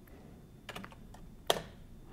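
Computer keyboard keystrokes: a few light key clicks, then one louder key press about a second and a half in.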